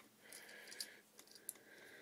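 Near silence with a few faint clicks of plastic LEGO pieces being handled and clipped together, over a faint steady hum.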